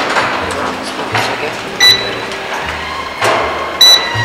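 Handheld barcode scanner beeping twice: two short, high electronic beeps about two seconds apart, over background music.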